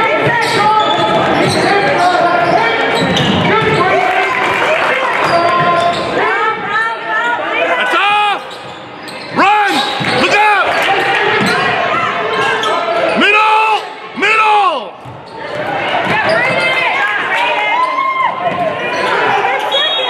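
Sound of a basketball game in play in a gym: a crowd talking and calling out, with several short, sharp shouts between about eight and fifteen seconds in, over a basketball being dribbled on the hardwood court.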